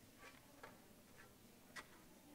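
Near silence with about four faint, short clicks and taps from sheet music being handled on a metal music stand.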